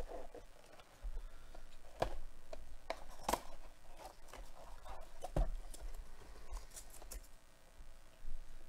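Cardboard Bowman baseball card box being opened and handled by gloved hands: rustling with several sharp taps and clicks.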